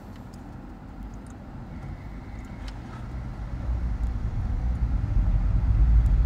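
Low rumble of a car heard from inside its cabin, growing steadily louder from about halfway through.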